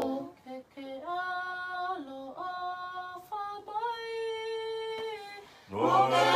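Tongan hiva 'usu, unaccompanied group singing: the group breaks off, a single woman's voice sings a line alone in held, stepping notes, and the whole group comes back in, louder and in harmony, near the end.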